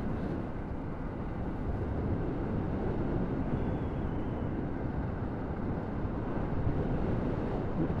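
Steady wind rush and road noise from a 125 cc motorcycle being ridden along at road speed, picked up by a helmet-mounted camera microphone.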